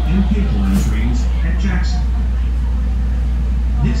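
Steady low hum inside a subway train car standing at a station, with people's voices talking over it.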